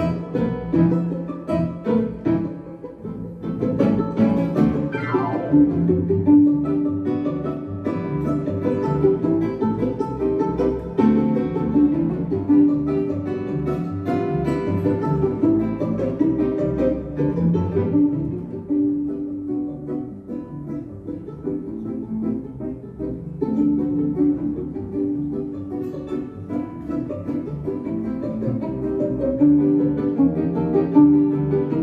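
A small live ensemble playing an instrumental piece: violin over acoustic guitar, double bass and grand piano, with a steady, unbroken flow of music.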